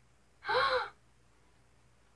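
A girl gasps once in surprise, a short voiced gasp about half a second in.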